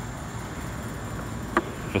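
Low, steady insect noise with a thin high whine running through it, and a single sharp click about one and a half seconds in.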